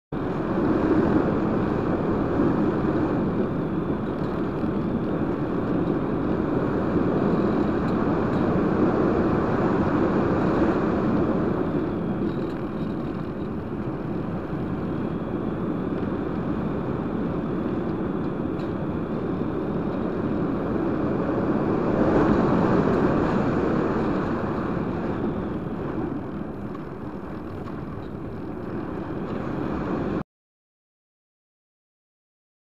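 Airflow rushing over an RC glider's onboard camera as the glider flies with its electric motor off. The steady rush swells and fades a few times.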